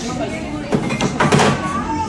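Indistinct voices talking, with a few short clicks about the middle.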